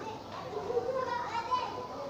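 Children's voices chattering in the background, fainter than the instructor's talk around them.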